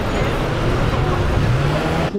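Steady city road traffic noise, with one vehicle's engine rising in pitch as it accelerates near the end.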